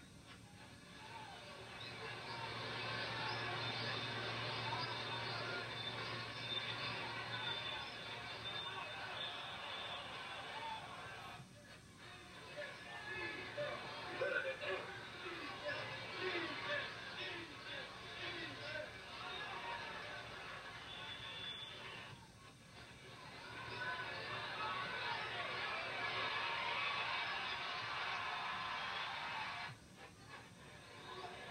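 Old football game broadcast audio through a television speaker: a stadium crowd's din with music and indistinct voices. It drops off briefly twice.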